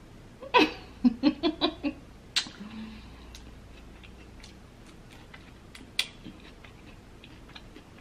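A woman's short giggle: a falling cry, then about six quick laugh pulses, with her mouth full of rambutan. After it come scattered faint clicks and ticks as her fingers work a peeled rambutan.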